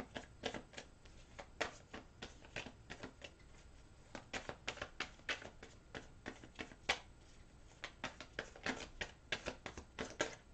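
A Rider-Waite tarot deck being shuffled by hand: a run of short, irregular card clicks, a few each second.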